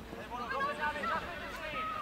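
Shouting voices carrying across an open football pitch during play, with a low steady outdoor rumble underneath.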